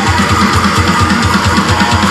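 Heavily distorted seven-string electric guitar playing fast, palm-muted chugs on the low strings, about eight a second.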